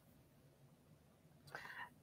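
Near silence, broken about a second and a half in by a faint, short, breathy sound from a woman's voice, like a whisper or an intake of breath.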